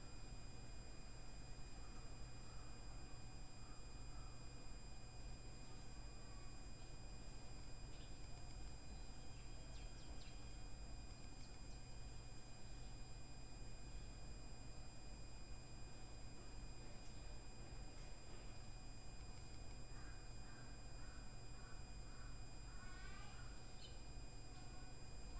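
Quiet room tone: a steady low electrical hum with faint high, steady whining tones from the recording setup. A few faint, quick chirps come in near the end.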